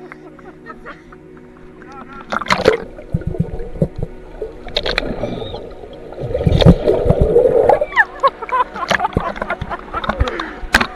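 Seawater splashing and sloshing around a camera at the surface of a shark cage, with gurgling as it dips underwater. The first two seconds hold a steady low hum. From about two and a half seconds in come loud, irregular splashes, heaviest around seven seconds.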